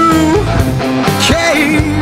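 Rock band playing: distorted electric guitars over bass and drums, with a lead melody line that slides and bends in pitch.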